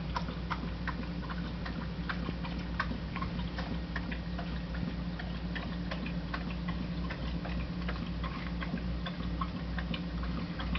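Quick irregular clicks and ticks, several a second, over a steady low hum.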